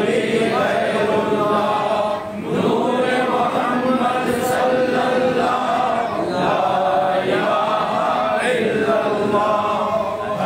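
Voices chanting Sufi zikr in a steady, continuous recitation, with a short break for breath about two seconds in.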